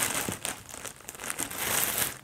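A plastic bread bag crinkling as it is handled, loudest at the start and again near the end.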